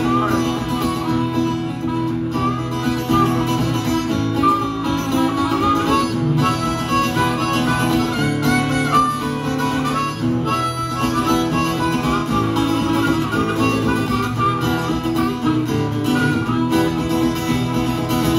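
Harmonica solo, its melody bending and wavering in pitch, played over an acoustic guitar strumming chords in a steady rhythm.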